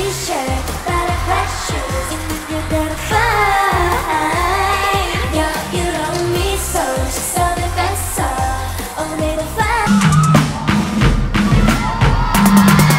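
K-pop dance track with female singing over drums and bass. Near the end it cuts to a different song with a new bass line.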